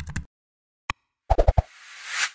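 Sound effects for an animated logo. A few low thumps and clicks end just after the start, a single click comes about a second in, a quick run of pops follows at about a second and a half, and a rising whoosh builds at the end.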